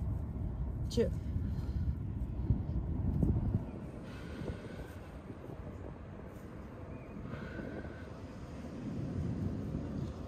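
A woman's voice counts once, about a second in, over a low outdoor rumble that drops away after about three and a half seconds, leaving quieter background noise.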